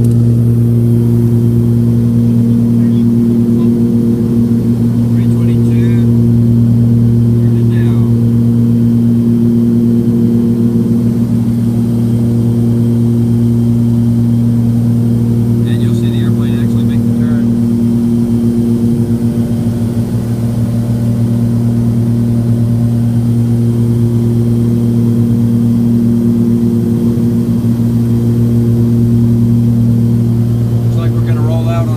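The twin turbocharged six-cylinder piston engines and propellers of a Cessna 340 running at steady power in flight, heard inside the cabin as a loud, even drone. Its upper tones swell and fade every few seconds, the beat of two engines running slightly out of sync.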